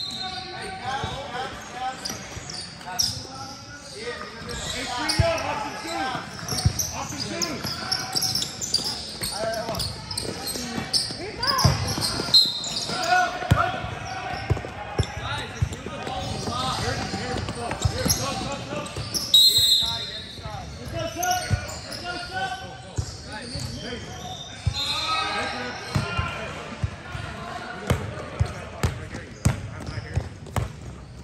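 A basketball bouncing on a hard indoor court, with repeated short thuds, among the voices of players and spectators in a large echoing gym.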